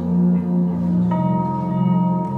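Slow instrumental background music with sustained, ringing notes over a low held tone; new notes come in about a second in.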